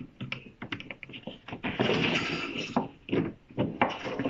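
Illustrated picture card being changed in a wooden kamishibai stage frame: scattered light taps and knocks of card against wood, with a longer sliding scrape of the card about two seconds in.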